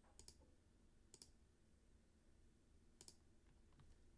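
Three faint computer mouse clicks, about a second or two apart, over near silence, as the run button is pressed to re-run a program.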